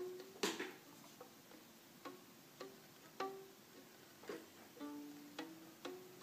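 Left-hand fingertips tapping down onto a fiddle's D string without the bow. Each landing gives a faint, short click with a brief pitched ping of the stopped note, about two a second, the pitches stepping among a few nearby notes.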